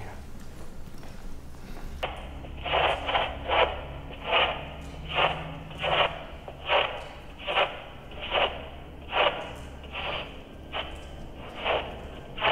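Handheld two-way radio held as a spirit box, giving short bursts of radio noise at a steady rhythm of a little more than one a second, starting about two seconds in.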